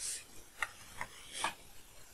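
Four short strokes of a stylus rubbing on a writing tablet as symbols are drawn; the first and last strokes are a little longer.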